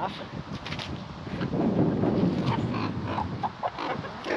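Chickens clucking as they gather and peck at fresh Swiss chard leaves tossed into their run.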